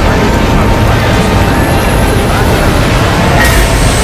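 Several film studio logo intros playing over one another: a loud, dense jumble of overlapping music and heavy low sound effects, with no single sound standing out.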